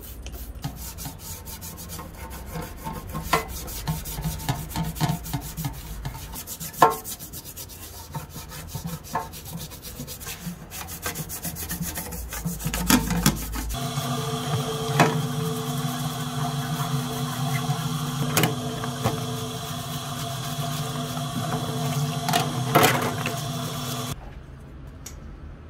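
A toothbrush scrubbing a rusty, paint-cracked metal license plate: rapid rasping back-and-forth strokes of bristles on metal, with a few sharper clicks. Partway through, a steady low hum comes in underneath.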